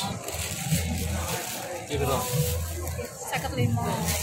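Thin plastic shopping bags rustling and crinkling as they are opened and handled, over low background voices.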